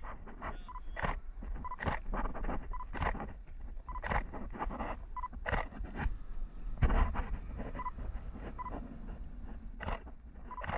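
Water lapping and splashing close to the microphone, heard as irregular short splashes about once a second over a low wind rumble. Faint short beeps recur about once a second.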